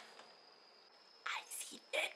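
Near-quiet room tone, then a man whispering close to the microphone in short breathy bursts from a little over a second in.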